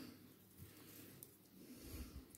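Near silence: room tone, with a couple of faint soft knocks, one about half a second in and one near the end.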